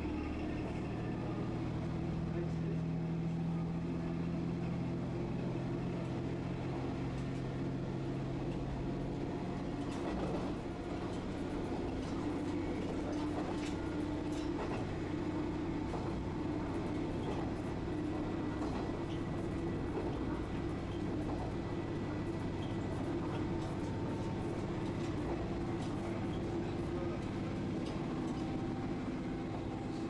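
Cab-view running sound of a JR Shikoku diesel railcar under way on the Dosan Line: the engine drone and the wheels on the track. The low engine note drops away about ten seconds in, leaving mostly the running noise of the wheels, with scattered light clicks.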